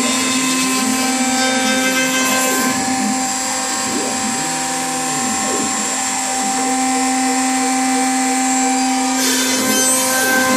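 A CNC router's spindle runs with a steady high whine as its bit cuts a circular pocket into a wood block. Under it, the stepper motors whine in rising and falling glides as the gantry traces the curve. A harsher hiss comes in near the end.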